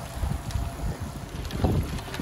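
Wind buffeting the microphone on a moving road bike: a low, uneven rumble.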